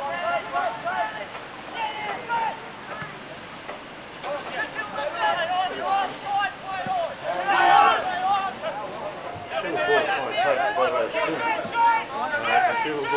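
Speech: a voice talking almost continuously, its words not made out, with a quieter gap about three to four seconds in.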